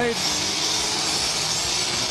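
Hockey arena crowd noise: a steady wash of many voices from the stands.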